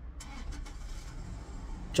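Steady low rumble inside a car cabin, with a few faint clicks about a quarter to half a second in.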